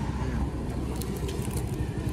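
A steady low rumble in the background, with faint voices and a few light clicks.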